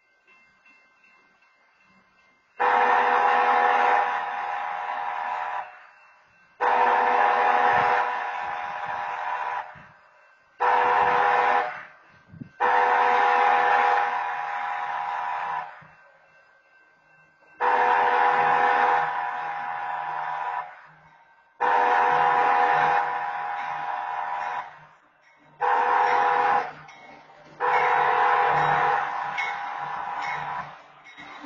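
Train horn sounding the grade-crossing signal (long, long, short, long) twice over. A low rumble sets in under the second sequence.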